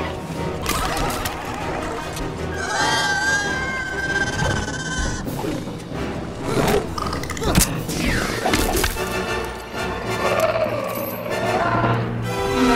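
Dramatic orchestral film score mixed with arena creature cries and a couple of heavy thuds about halfway through.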